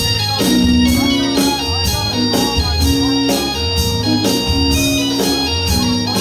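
Live rock band in an instrumental break, with an electric organ playing lead over bass and drums; the drums keep a steady beat of about two hits a second.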